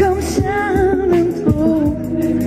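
Live soul band playing, with drums, bass and keyboards under a held, wavering melody line and several drum hits.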